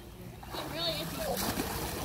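Pool water splashing and sloshing as a toddler is plunged into the water and lifted back out, with faint voices in the background.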